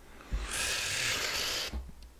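A long breathy exhale, a hiss of breath lasting just over a second.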